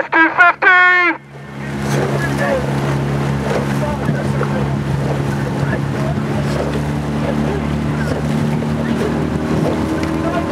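A brief loud shout in the first second, then the steady drone of a coaching launch's motor running alongside a rowing shell, over water noise.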